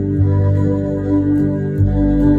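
Live band and symphony orchestra playing a slow instrumental passage of sustained chords without vocals, the bass note changing just after the start and again near the end.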